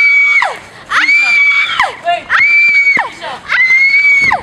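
A young woman screaming over and over: four long, high screams about a second apart, each rising sharply, held, then dropping away.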